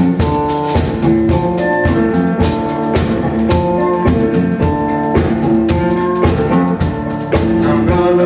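Instrumental blues played live on a hollow-body electric guitar with a small drum kit of snare, cymbal and bass drum keeping a steady beat.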